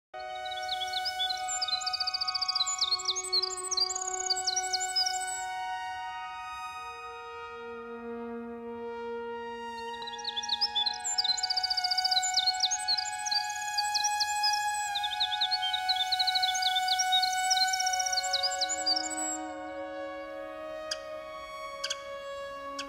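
Ambient music of long held tones, with a winter wren's rapid, tumbling trilled song laid over it in three long bursts.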